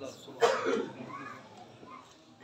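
A single short cough about half a second in, followed by a low, quiet background.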